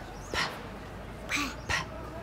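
Two short breathy hisses of air, like whispered consonants, in a quiet gap between spoken turns: the first about half a second in, a brighter one past the middle.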